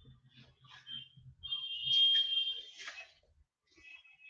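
A high-pitched steady tone, like an electronic beep: a short one about a second in, then one held for about a second and a half.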